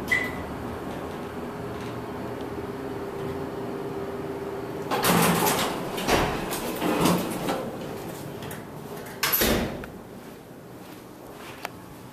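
Dover hydraulic elevator car running with a steady hum, a short high beep just after the start. About five seconds in the hum stops and the doors slide open with a burst of rattling and clattering, followed by one loud thump a little later.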